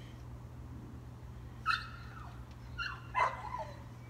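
A dog giving three short, high-pitched calls that drop in pitch: one about two seconds in and two close together near the end, the last the loudest.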